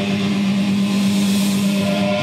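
Live heavy metal band holding one loud, steady distorted chord on electric guitar and bass, letting it ring out at the end of a song.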